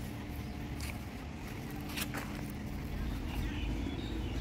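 Outdoor park ambience: distant voices of people over a low rumble that grows near the end, with two brief clicks about one and two seconds in.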